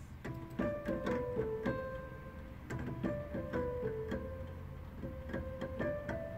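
Electronic keyboard played live: a single-line melody of separate notes, several a second, some held longer.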